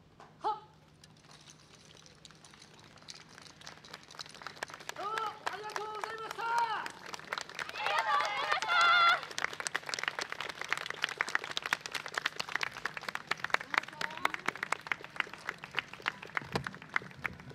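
Audience applause that starts faint about a second in and grows into steady clapping at the end of a dance performance. Loud voices call out twice in the middle, the second time loudest.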